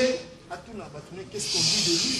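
A hissing breath drawn close to a handheld microphone, lasting just under a second near the end. Faint room murmur comes before it.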